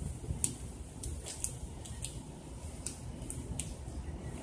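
A squirrel gnawing through an acorn shell: irregular crisp clicks, about a dozen, over a low rumble.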